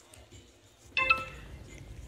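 A short ringing tone, several pitches at once, starting suddenly about a second in and fading away over about half a second, over faint background noise.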